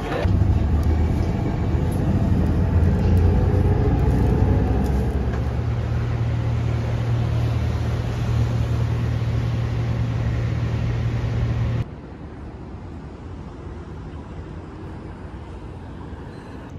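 Motor vehicle engine running with a steady low hum over road noise, cutting off abruptly about twelve seconds in and leaving quieter, even street traffic noise.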